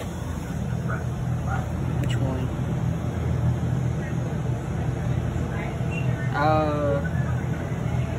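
Steady low electric hum of a shop's refrigerated drinks cooler, heard with its door open, with a few faint knocks of plastic bottles being handled on the wire shelves.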